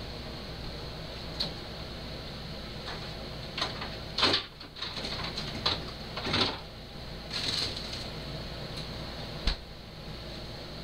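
Scattered short knocks and clunks of things being handled, the loudest about four seconds in, over a steady background hum.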